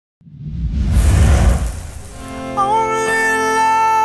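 A swelling rush of noise with a deep rumble rises over the first second and dies away, then a man starts singing over acoustic guitar about two and a half seconds in, holding long notes.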